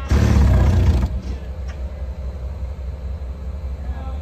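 Mobile crane's diesel engine running steadily while lifting a load, with a loud, noisy surge lasting about a second at the start.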